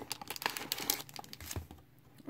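Hands opening and handling a cardboard trading-card retail box and its wrapped packs: crinkling and tearing with many small crackles, dying away near the end.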